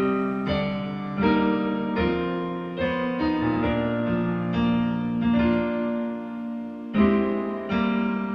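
A hymn played on a digital piano: full chords struck at a slow, steady pace, a new chord about every half second to three-quarters of a second, with the loudest strike near the end.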